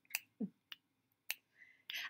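A few sharp finger snaps, unevenly spaced, played as body percussion for the skeleton.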